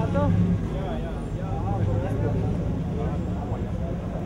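Background voices of people talking over the steady low hum of an idling engine.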